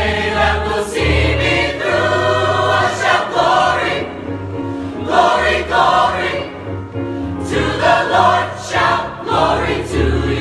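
A high-school choir of boys' and girls' voices singing together, in held phrases that change every second or so.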